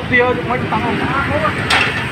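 People talking, with a steady low rumble of background noise under the voices.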